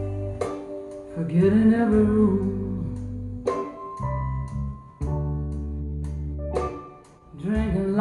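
Recorded blues song played through a 7591 push-pull valve amplifier and loudspeakers and picked up in the room: a woman sings a line about a second in and again near the end, over bass and guitar.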